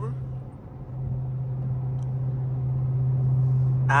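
Dodge Hellcat's supercharged V8 on a Corsa exhaust droning steadily inside the cabin at highway speed. It dips briefly just after the start, then grows gradually louder.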